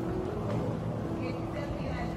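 Airport terminal ambience: a steady low rumble with indistinct voices in the background.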